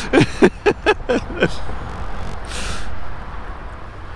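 Steady low rumble of road traffic with one short hiss about two and a half seconds in, like a truck's air brake. A quick run of short voice sounds, like laughter, comes in the first second and a half.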